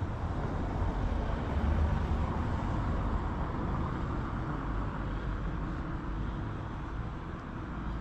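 Steady outdoor street noise: an even, low rumble like car traffic, with no distinct events.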